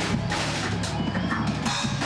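Metal band playing live in a small room: distorted electric guitars and bass over a drum kit with steady, frequent drum hits.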